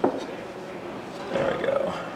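A man's brief wordless vocal sound, about halfway through, with a quick flutter in it.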